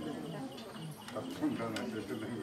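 Crickets chirping steadily under low murmuring voices, with a single sharp knock about one and a half seconds in.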